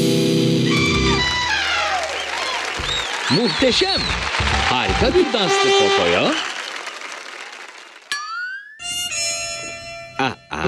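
Cartoon soundtrack: a music cue with held chords ends about a second in, followed by a few seconds of swooping, wobbling cartoon voices and sound effects that die away, then a quick rising whistle-like glide and a short held musical chord near the end.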